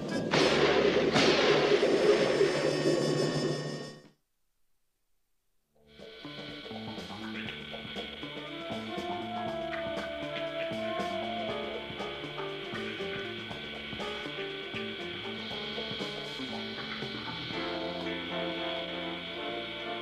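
Cartoon water-entry sound effect: a loud splash and bubbling rush lasting about four seconds. It cuts to silence for about two seconds, then a music score with steady held tones takes over.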